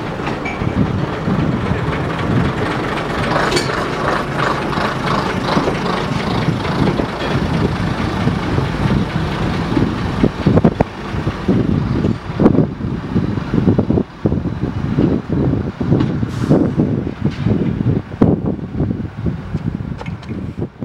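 British Rail Class 121 single-car diesel railcar pulling away along the platform, its diesel engines running steadily. About halfway through, irregular knocks and clatter from the wheels and running gear come in as it moves off.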